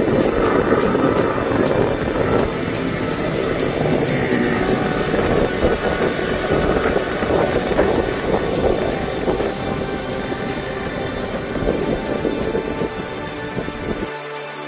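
Mini motorbike engines running on the track, a steady engine drone, with music playing underneath.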